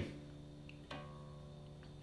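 Unplugged electric bass guitar's D string ringing faintly with a steady low note, plucked lightly again about a second in. The string is being brought up to pitch against a clip-on tuner.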